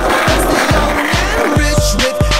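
An upbeat song with a steady beat, over the sound of a skateboard on concrete.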